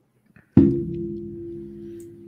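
A ringing musical chord struck once about half a second in, its several notes sounding together and fading slowly.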